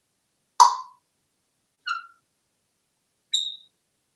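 African grey parrot giving three short calls: a sharp, loud call about half a second in, then two brief whistled notes, the last one higher in pitch.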